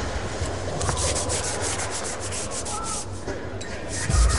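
Arena crowd applauding steadily, a dense patter of many hands clapping.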